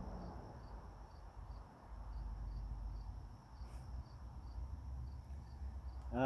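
Faint, steady insect chirping, a high pulsing note repeating about two to three times a second, over a low outdoor rumble.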